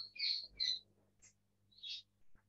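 A small bird chirping faintly: a few short, high chirps spaced through the moment, with a low steady hum beneath.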